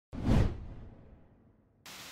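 A single whoosh sound effect that swells quickly and then fades away over about a second and a half.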